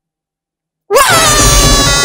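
Silence for about the first second, then a cartoon character's long, loud yell: the pitch jumps up at the start and is then held steady for over a second.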